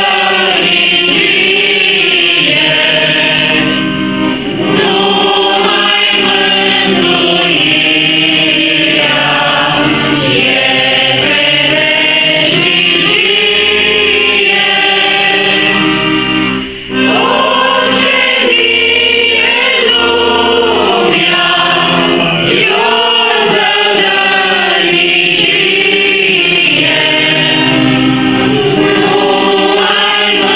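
A small mixed group of women's and men's voices singing a hymn in unison, accompanied by a piano accordion. The singing is continuous, with one short break between phrases about seventeen seconds in.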